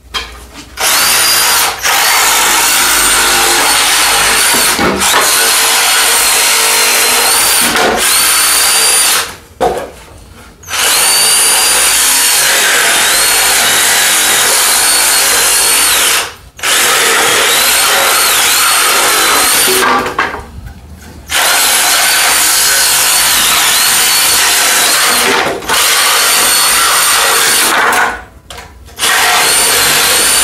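Reciprocating saw cutting between pallet deck boards and the stringer to sever the nails, with a high motor whine. It runs in five spells of several seconds, with brief pauses between the cuts.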